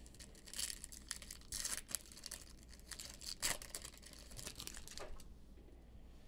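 A foil trading-card pack wrapper being torn open and crinkled by hand, in several short, faint rustling bursts.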